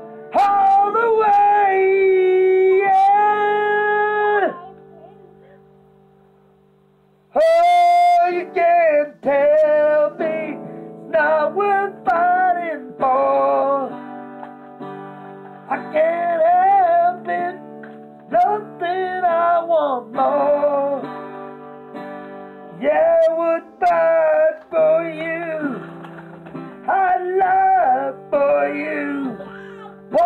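A man singing to his own strummed acoustic guitar. About four seconds in, a chord rings out and fades almost to silence; near the eighth second a sharp strum brings the guitar and voice back in, and they carry on to the end.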